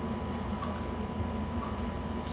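Steady low background hum with a faint, thin high tone running through it; no speech.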